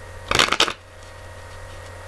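Tarot cards being handled: a brief papery rustle of clicks, under half a second long, starting about a third of a second in. A low steady hum sits under it.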